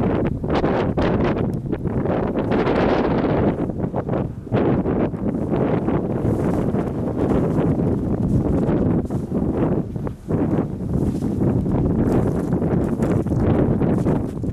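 Wind buffeting the microphone: a loud, gusty rumble, with irregular crunching of footsteps on packed snow as the camera operator walks.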